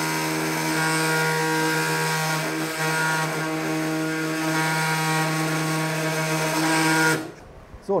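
Robot-arm-mounted oscillating bone saw running at a steady pitch as it cuts through the knee bone for a total knee replacement, then cutting off suddenly about seven seconds in.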